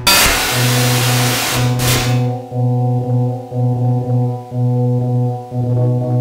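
Loud improvised electronic music. A burst of noise like a crash or noise sweep opens it and dies away about two seconds in, over a low, buzzy, organ-like synth note that pulses about twice a second.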